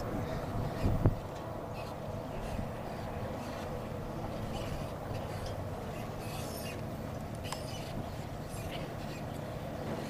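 Steady outdoor arena background noise with a faint hum and scattered light clicks and rattles, and a short thump about a second in.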